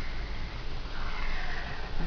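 Soft airy hiss close to the microphone over a low steady hum, with no speech.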